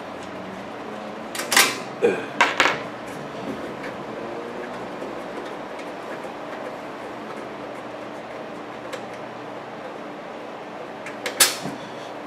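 Sharp metallic clicks and scrapes from the thumb screws and all-metal cover of a vintage Sansui receiver being worked loose: a cluster about one and a half to three seconds in and another just before the end, with only a faint steady room hum between.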